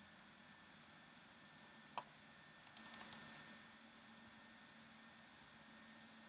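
Faint computer keyboard keystrokes over near-silent room tone: a single key press about two seconds in, then a quick run of five or six presses around three seconds.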